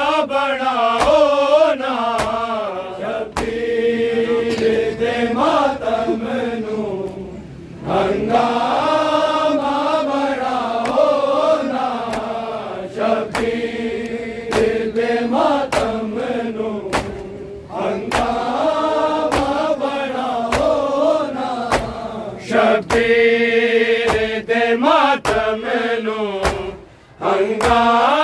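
Punjabi noha chanted by a group of male reciters in long mournful lines with short breaks between them, accompanied by sharp slaps of hands striking bare chests in matam about once a second.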